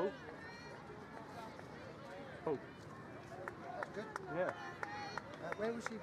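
Spectators shouting encouragement to passing runners: a few short, separate calls heard over open-air background noise.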